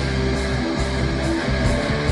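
Live hard rock band playing an instrumental passage, with an electric guitar picked over steady low sustained notes.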